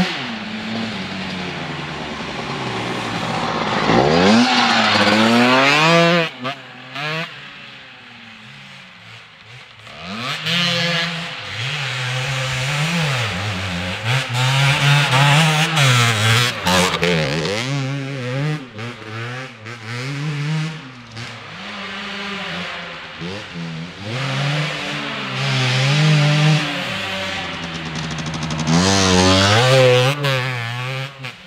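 Enduro dirt bike engines revving up and down over and over as the riders work the throttle and shift gears through the woodland trail. The sound swells loudest when a bike passes close, in the middle and again at the end, and drops back while the bikes are farther off.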